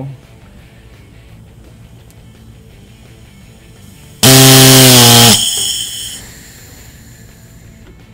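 Shop air through a Harley-Davidson Twin Cam camplate's oil pressure relief valve on a bench pressure tester as the regulator is turned up. About four seconds in, the valve pops off with a sudden loud, honking buzz of rushing air that holds for about a second and then fades over the next second. The valve still leaks at low pressure, so it is not yet seated and sealed.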